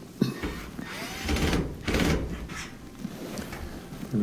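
Cordless drill driver briefly running to tighten a small Phillips screw into a dryer's sheet-metal front panel, in two short runs.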